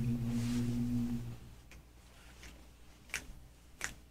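Low male voices holding one steady hummed note, the choir taking its starting pitch before the song, which stops about a second and a half in. Then near quiet with a couple of faint clicks.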